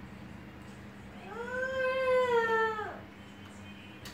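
A cat giving one long, drawn-out meow of about two seconds, starting about a second in, rising slightly and then falling away at the end.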